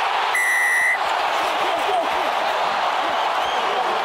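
Referee's whistle blown once in a short, steady blast of about half a second, shortly after the start, awarding the try. Steady stadium crowd noise runs underneath.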